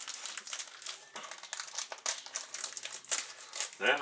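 Margarine sizzling in a frying pan, with quick irregular crackling pops.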